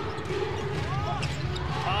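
Basketball being dribbled on a hardwood court during live play, over steady arena crowd noise, with a couple of short sneaker squeaks about halfway through.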